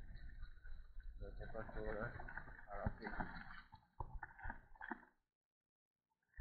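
Indistinct talking with a low rumble underneath and a few sharp knocks. The sound cuts off abruptly to dead silence about five seconds in.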